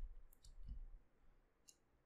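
A few faint clicks of computer keys over near silence.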